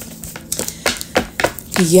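Tarot cards being picked up and tapped against a wooden tabletop: several short, sharp taps and clicks.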